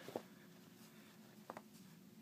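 Near silence with faint handling noise from a cotton jiu-jitsu gi jacket being turned in the hands: two brief soft clicks, about a second and a half apart.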